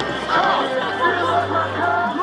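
People chattering over music playing through loudspeakers, with no firework bangs; a low steady hum comes in about a second in.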